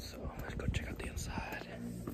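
Faint, indistinct voice sounds with breathy hiss and a few soft clicks.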